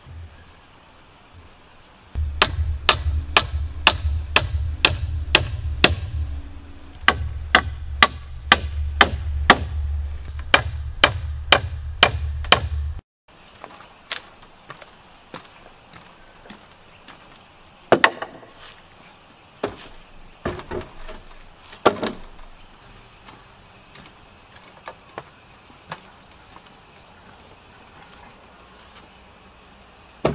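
Hammer striking nails into wooden deck planks, a steady run of blows about three a second with a short pause, stopping abruptly about thirteen seconds in. After that, a few scattered knocks of wooden boards.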